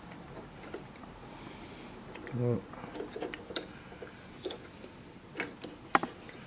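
Small sharp clicks and ticks of blue insulated spade connectors and wires being handled and pushed onto the terminals of a heat press control board, scattered through the second half with the sharpest click near the end. A brief hum of voice about two and a half seconds in.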